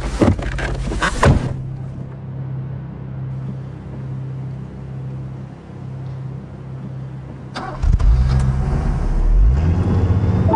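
A car's interior: knocks and rustling as someone gets into the driver's seat, then a quiet steady hum. About three-quarters of the way through, the car's engine starts and runs louder, rising in pitch near the end.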